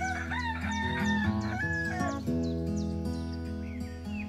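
A rooster crowing once, a long call of about two seconds that drops in pitch at its end, over background music with held chords. Small birds chirp faintly throughout.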